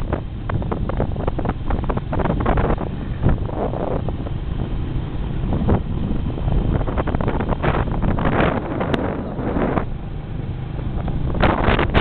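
Wind buffeting the microphone of a camera carried on a moving vehicle, in uneven gusts over a steady low rumble of motion.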